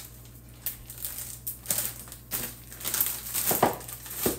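Plastic zip-top freezer bags crinkling and rustling as they are picked up and moved. Irregular soft crackles are punctuated by a few louder rustles.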